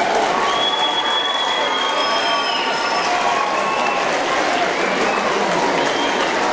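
A large audience applauding steadily, with a few voices calling out over the clapping.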